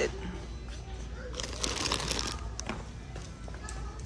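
Shop ambience: background music and faint voices over a low steady hum, with a rustling noise about halfway through.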